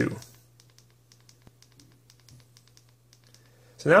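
Zebralight SC5 flashlight's side switch clicked faintly and repeatedly in a quick run of double-clicks, cycling the light through its brightness choices for the High 2 level.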